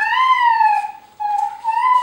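A high-pitched, sustained, voice- or whistle-like tone in two long notes. The first glides downward. After a brief break about a second in, the second rises.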